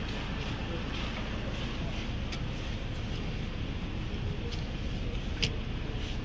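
Steady low rumble inside a Honda Civic's cabin, with a few light clicks and handling noises, the sharpest about five and a half seconds in.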